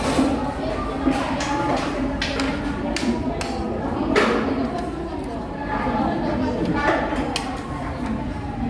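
Metal spoon and fork clinking and scraping against a plate, a string of short sharp clicks spaced irregularly, over steady background chatter of other diners in a busy restaurant.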